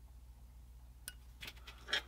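A few faint clicks and light taps of a metal hobby pick against a small resin model part as thin CA glue is wicked in. The taps come in the second half, the loudest just before the end.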